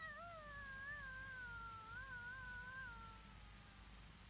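A person's imitation of a cat's caterwaul, faint and distant: one long wavering call that slowly falls in pitch and fades out near the end.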